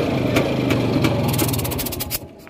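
Soviet IZh motorcycle's two-stroke engine idling, a sharp tick about twice a second over its steady hum. Near the end it breaks into a quick rattle and dies away as it shuts off.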